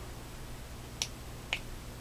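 Two sharp clicks about half a second apart from the BlackFire BBM6414 headlamp's push-button switch, pressed to cycle the light and switch it off.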